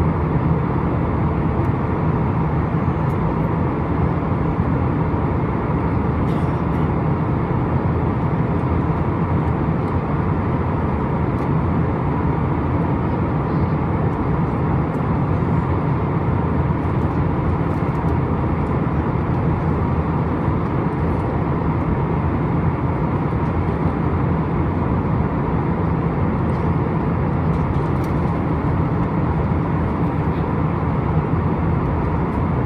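Steady in-flight cabin noise of an Airbus A320-214, heard from a window seat over the wing: the even hum of its CFM56 turbofan engines mixed with the rush of air past the fuselage, with a faint steady whine in it.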